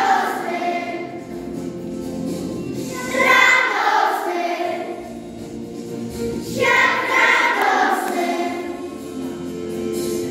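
A choir singing, its phrases swelling and fading about every three and a half seconds.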